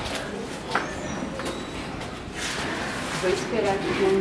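Faint voices over a steady background noise, with a single click about three quarters of a second in.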